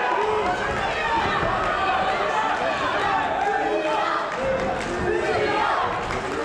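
Crowd of fight spectators shouting and cheering, many voices overlapping.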